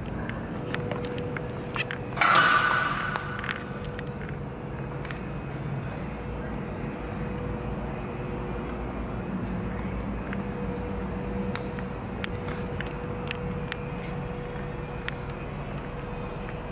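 Room tone in a large showroom: a steady background hum with a thin steady tone, scattered faint clicks, and a louder rushing noise about two seconds in that fades over about a second.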